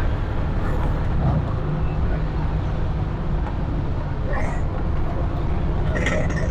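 TVS King auto-rickshaw (bajaj) engine running steadily while the vehicle drives along the road, heard from inside the open passenger cabin, with road and traffic noise. The level is even throughout, with a steady low hum.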